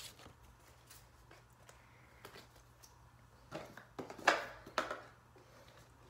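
Handling noises: faint clicks and rustles, then a short cluster of knocks and scuffs about three and a half to five seconds in, as paper cards and a worksheet are handled at a whiteboard.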